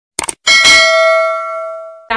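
A notification-bell sound effect: a quick double click, then a single bright bell ding about half a second in that rings and slowly fades.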